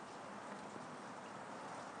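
Faint steady background hiss of a voice recording, with a few small ticks.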